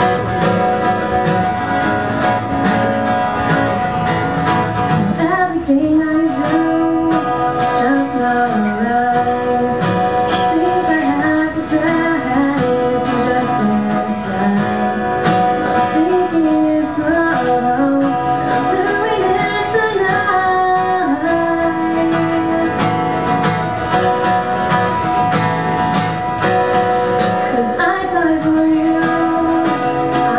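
Solo acoustic guitar played with a young woman singing along, the voice coming in about five seconds in.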